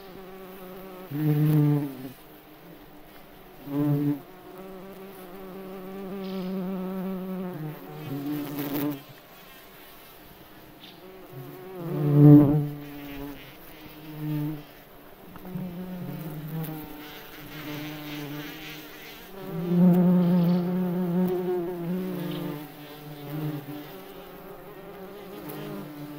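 A May bug (cockchafer) buzzing with its wings in flight: a low buzz that swells and fades several times. It is loudest around the middle and again about three-quarters of the way through.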